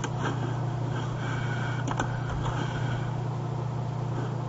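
Steady low electrical hum with hiss, with a few faint clicks about a second apart near the start and middle.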